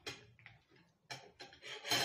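Eating sounds: chewing with the mouth closed, a string of short, noisy smacks and crunches that grow louder near the end.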